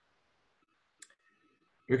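Near silence broken by a single short click about a second in; a man's voice starts just at the end.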